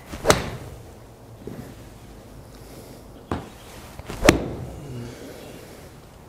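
A 56-degree Smithworks wedge striking a golf ball off a hitting mat, a single sharp crack a moment after the top of the backswing. About three seconds later come two more sharp knocks a second apart, the second the loudest of all.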